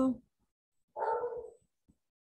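A dog barking once, about a second in.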